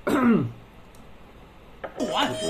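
A person's short voiced sound falling steeply in pitch over about half a second, then quiet.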